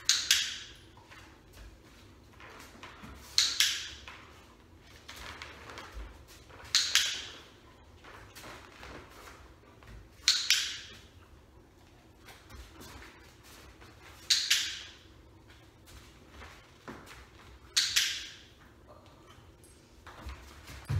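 Dog-training clicker clicked six times at an even pace, about one click every three and a half seconds, each a quick double snap with a short ring in the bare room, marking the dog's correct behaviour.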